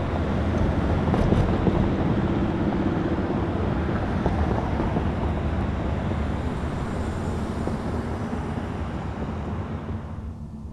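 Road traffic on a town street: a steady rush of passing cars that slowly fades.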